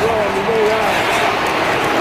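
A man's voice giving broadcast commentary over steady stadium crowd noise.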